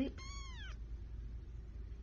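Young kitten giving one short, high meow that rises and then falls in pitch, a fraction of a second in.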